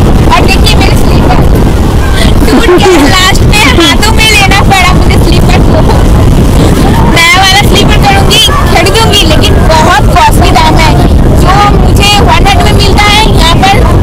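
Strong wind buffeting the microphone at the seashore: a loud, continuous low rumble, with a woman's voice heard talking over it.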